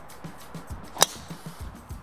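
A golf driver striking a ball off the tee: one sharp, short crack about halfway through.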